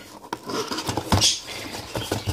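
Cardboard box being forced open by hand, its stiff flaps scraping and rubbing, with a few light knocks; louder scraping a little past a second in.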